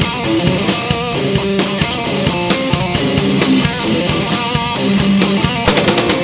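Hard rock band playing live: an instrumental passage of electric guitar over bass and drum kit, with steady, dense drum hits.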